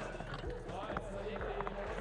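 Skateboard wheels rolling and carving on a plywood bowl ramp, with a few light knocks scattered through.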